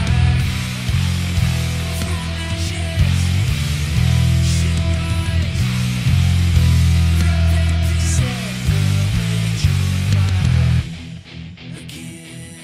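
Recorded heavy metal track led by an electric bass riff, with long low notes changing every second or so. The riff cuts off abruptly near the end.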